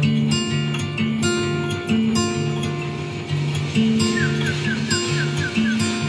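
Recorded music: a steel-string acoustic guitar picks a repeating pattern of held chords over a low bass line. About four seconds in, a run of short falling chirps joins it.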